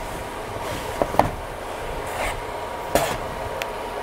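A few light knocks as a wooden bench frame is handled and lifted off its seat board, with a steady background noise throughout: two knocks about a second in and another about three seconds in.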